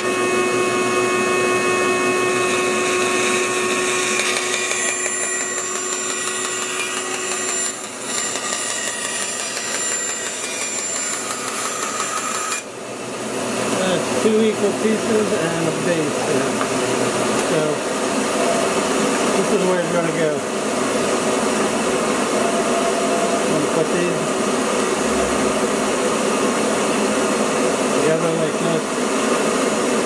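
A bandsaw running steadily while wood is cut into strips and pieces for a jig. Its steady whine changes character about twelve seconds in.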